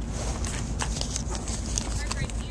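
Footsteps on asphalt: a few irregular taps and scuffs over a low steady rumble.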